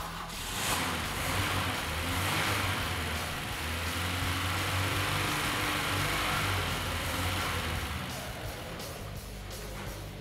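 Inline four-cylinder engine on a test stand starting and then running steadily at idle, its distributor just set by hand to roughly 10 degrees of ignition advance. Background music plays underneath.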